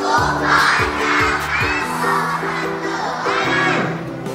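Background music with a steady beat under a crowd of children calling out a greeting together in unison, their many voices rising and falling in a few swells.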